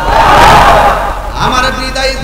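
A man's loud, strained wailing cry of lament, amplified through a public-address microphone, for about a second. His voice then picks up again in a drawn-out, chanted tone.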